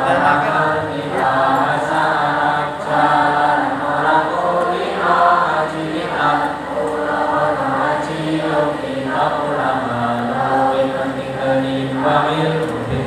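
A large choir of students singing together in sustained, held phrases without a break.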